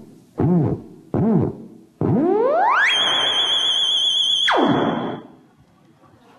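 Theremin playing two short swooping notes that rise and fall, then a long glide from low up to a high, piercing pitch held with a fast vibrato for about a second and a half before it stops, leaving a reverberant tail.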